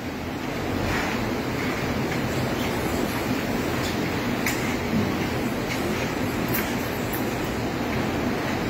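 Milking-parlour machinery running steadily, with milking units attached to a row of cows, and a few faint clicks now and then.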